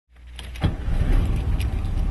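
Car engine sound fading in, with a sharp knock about two-thirds of a second in, then running with a steady low pulsing rumble.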